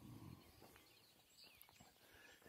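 Near silence: faint outdoor ambience after a brief 'um', with a small bird chirp about one and a half seconds in.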